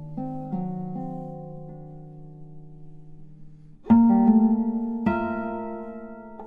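Solo classical guitar played slowly: soft single plucked notes left to ring, then a loud chord struck about four seconds in and another about a second later, both ringing and fading.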